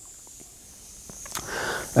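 Quiet room tone with a few faint clicks as a bunch of keys is handled at a motorcycle's ignition, then a short rush of noise near the end.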